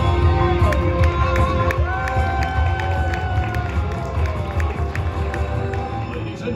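Live stage walk-on music with a steady bass, over an audience cheering and applauding.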